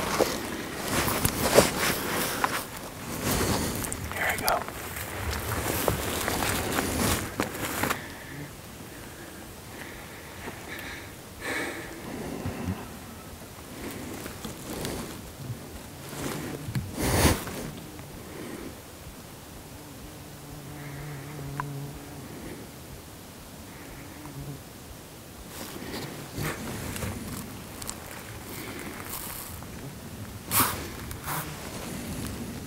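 7mm-08 hunting rifle fired at a mule deer: a sharp report about a second and a half in and another about seventeen seconds in, with rustling and handling noise through the first several seconds.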